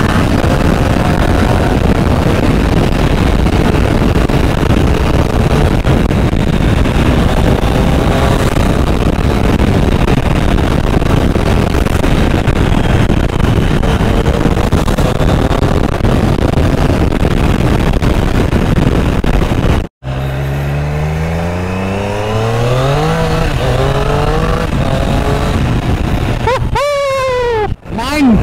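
Triumph Street Triple R's three-cylinder engine accelerating through the gears, its pitch climbing and then dropping back at each upshift, several times in the last third. For most of the first two-thirds the engine is half buried under heavy wind noise on the microphone, and the sound cuts out abruptly twice.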